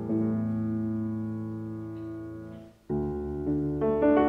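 Solo piano playing slow chords. A chord struck just after the start rings and fades for nearly three seconds, breaks off in a brief silence, and new chords are struck near the end.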